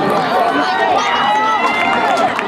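Several spectators' voices overlapping, with laughter.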